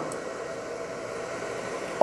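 ProLong battery discharger running with a steady whirring hiss as it draws about 1.6 amps from a lithium hybrid battery, discharging it at low current.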